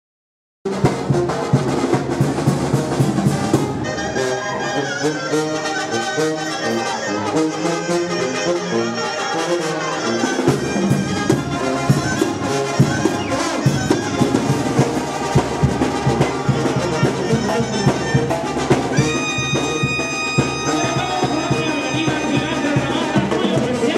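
Sinaloan banda music with trumpets and trombones over percussion, starting suddenly about half a second in after a brief silence between tracks.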